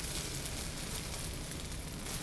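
An omelet sizzling softly in clarified butter in a hot non-stick pan, a steady even hiss.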